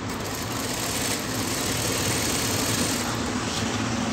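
Industrial sewing machine running, stitching a bias strip folded over cord under a half presser foot for piping; the sewing run eases off about three seconds in over the motor's steady hum.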